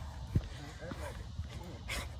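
Faint, short vocal sounds from a person out of breath, over a low rumble of wind on a phone microphone, with a soft thump about a third of a second in.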